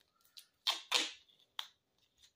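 A few short, sharp handling noises on the workbench: a faint click, then two louder raspy rips just under a second in, and another click.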